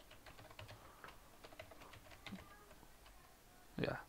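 Computer keyboard typing: a run of faint, quick keystrokes as a short line of code is entered.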